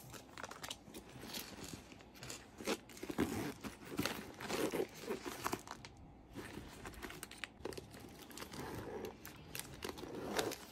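Tissue paper and plastic packaging crinkling irregularly as hands handle and open a new denim crossbody bag stuffed with tissue paper. There is a brief lull about six seconds in.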